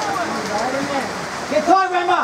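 Steady rain hiss, with players' shouts across the pitch over it and a louder shout near the end.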